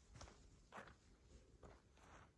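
Faint footsteps on dry dirt ground, three steps a little over half a second apart, against near silence.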